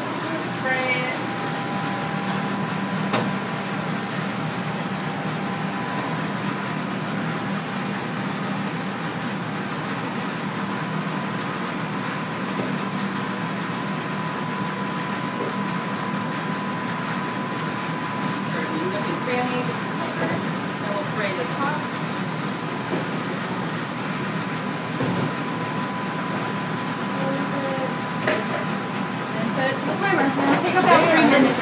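Steady hum of commercial kitchen equipment around a row of waffle irons, with faint voices now and then and a few seconds of hiss about three-quarters of the way in.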